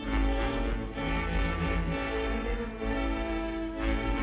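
Orchestral film score led by violins and bowed strings, with sustained notes changing about every second and a low bass line underneath.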